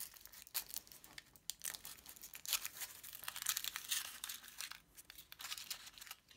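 Foil wrapper of a Kinder Surprise chocolate egg being peeled off by hand: a run of quick, irregular crinkles and crackles.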